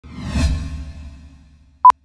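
A whoosh sound effect that swells within half a second and fades away over about a second and a half, followed by a short, very loud single-pitch electronic beep near the end.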